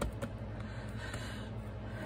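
Steady hum of a room air conditioner, with faint soft rubbing and a few light ticks as hands press a wet paper towel down onto paper.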